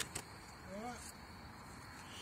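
Quiet night ambience with a faint, steady, high insect drone, a couple of clicks at the very start, and a short murmured "hm" about a second in.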